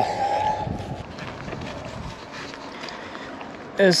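Footsteps through dry grass and brush along the bank, with scattered light rustles and knocks, while a voice's drawn-out "oh" trails off at the start.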